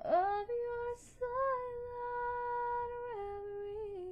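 A solo woman's voice singing a cappella, with no accompaniment: a note that slides up at the start, a short note, then a long held note that steps down to a lower one near the end.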